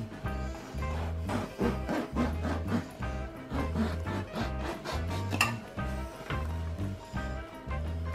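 Background music with a steady, repeating bass beat.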